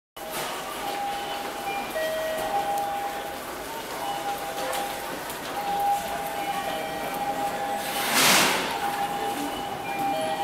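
Railway platform sounds of an electric train: steady whining tones that break off and resume, and a short, loud hiss of air about eight seconds in.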